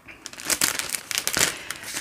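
Crinkling packaging being handled and rummaged through, a run of irregular rustles and crackles.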